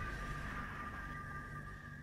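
The tail of a logo-reveal intro sound effect: two steady high synthesized tones over a low rumble, slowly fading out.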